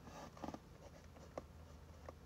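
Ballpoint pen writing on paper, a faint scratching with a few light ticks of the pen about half a second in and again near one and a half seconds.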